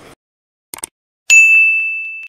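Two quick clicks, then a single bright bell ding that rings on and slowly fades: a subscribe-button click and notification-bell sound effect.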